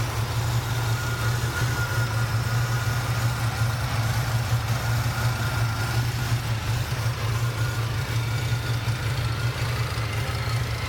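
Oldsmobile 442 Hurst Edition's V8 idling steadily with a low, even hum, heard up close in the open engine bay.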